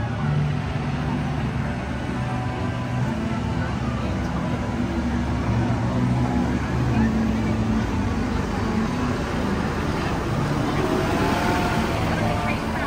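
A small ride train rolling in along its track toward the station, with background music and people's voices around it.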